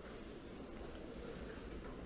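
Faint room tone with a steady low hum, and one brief faint high squeak about a second in.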